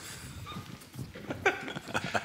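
A man laughing briefly, a few short chuckles about a second in, over quiet room noise.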